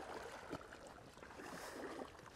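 Faint, irregular splashing and sloshing of shallow floodwater as dogs and a person wade through it.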